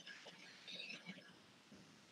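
Near silence: faint room tone with a few brief, very faint soft sounds about a second in.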